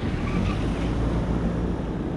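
Steady outdoor ambience of wind on the microphone and the rush of surf, heaviest in the low end.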